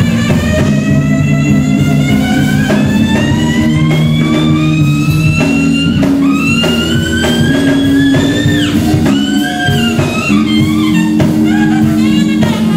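Live blues-rock band playing loudly: an electric guitar holds one long note that slides slowly upward for about eight seconds and then falls away. Bass and drums carry on underneath, and shorter, choppier guitar notes follow near the end.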